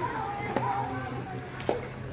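Children's voices calling out across a swimming pool, with two sharp taps, one about half a second in and one near the end, over a steady low hum.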